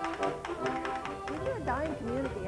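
Background music with brass-like sustained notes over a quick tapping beat. A voice is heard briefly near the end.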